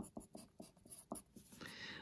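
Wooden pencil writing on paper: a quick run of short, faint scratching strokes.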